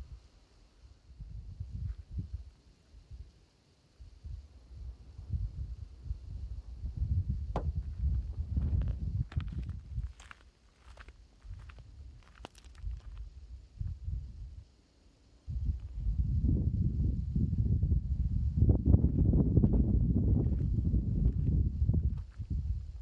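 Wind buffeting the microphone in uneven gusts, heaviest in the last third. A few short crunching steps on desert gravel come through about a third of the way in.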